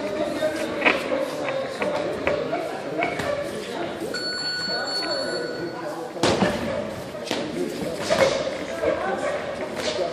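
Boxing gym during sparring: background voices in a large echoing room, with scattered thuds of gloved punches and footfalls on the ring canvas. A steady high tone sounds for about a second and a half near the middle, and a loud knock comes about six seconds in.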